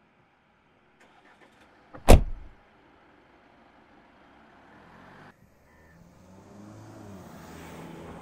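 A car door slammed shut about two seconds in, one loud thud. From about four seconds the car's engine is heard, a low hum that builds toward the end.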